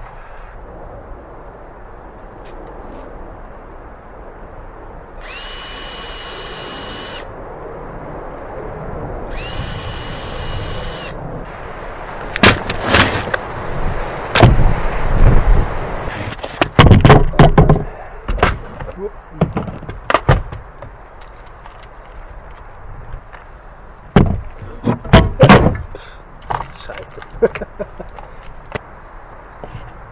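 Cordless drill run in two bursts of about two seconds each, each with a steady high whine, drilling pilot holes into wooden frame knees. A run of sharp knocks and clatters of wood and tools being handled follows.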